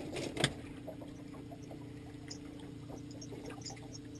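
Boat's motor running steadily at trolling speed, a low even hum, with water sounds around the hull. A single knock about half a second in.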